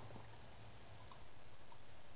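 Dog chewing a grilled corn cob: faint crunching with a few small, scattered clicks of teeth on the kernels.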